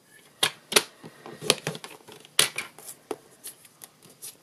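Paper trimmer's scoring blade being run along its rail to score a cardstock tulip, with the piece then lifted out: a run of irregular sharp clicks and short scrapes.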